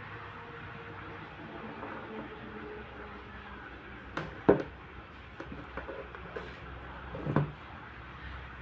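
Handling noise from a dissolved oxygen probe and its cable: one sharp knock about halfway through and a smaller one near the end, with a few light clicks between, over steady room noise.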